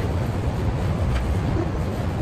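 Steady low rumble of outdoor background noise, even in level throughout, with no clear single event.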